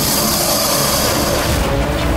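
Dramatic TV-serial background score with steady held notes, overlaid by a loud rushing noise effect that cuts in at once and stops suddenly about one and a half seconds in.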